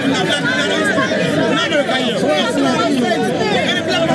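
A street crowd of many people talking at once, their voices overlapping into a dense, steady chatter.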